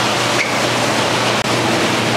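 Steady, loud rushing hiss of aquarium water and air circulation in a room full of fish tanks, with a low steady hum underneath. The sound drops out for an instant about one and a half seconds in.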